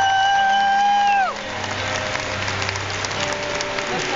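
A singer holds one long high note, ending with a short downward slide about a second in. Crowd applause and cheering follow.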